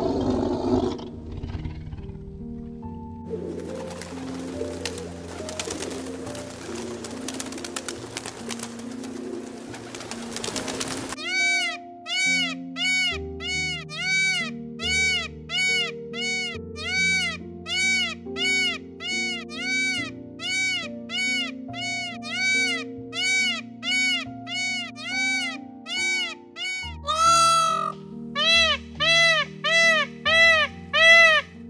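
Background music throughout, with a tiger's roar dying away in the first second. From about a third of the way in, a peacock calls over and over, a short rising-and-falling call about one and a half times a second, louder near the end.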